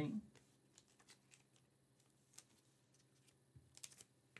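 Near silence with a few faint, short clicks of trading cards being handled and set down, a small cluster of them near the end.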